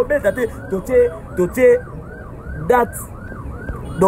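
A siren wailing up and down quickly, about three rises and falls a second, with voices talking over it.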